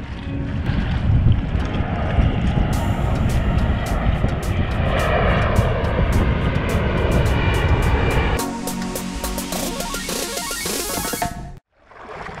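Large airplane passing low overhead: a loud engine rumble that swells to its loudest about halfway through and then falls away, under background music.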